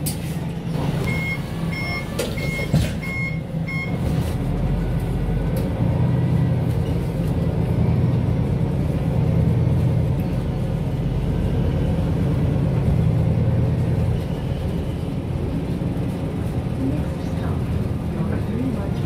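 Five short, evenly spaced high beeps, typical of a bus's door-closing warning. Then the MAN A22 city bus's diesel engine and drivetrain grow louder as the bus pulls away and gathers speed, heard from inside the passenger cabin.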